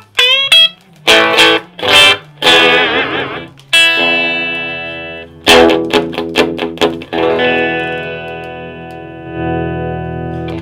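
Electric guitar played through a 1957 Fender Deluxe tube amp and its replacement 1960s Jensen speaker, with the tone knob about halfway up. A run of picked chords and single notes is followed, about seven seconds in, by a chord left to ring out and fade.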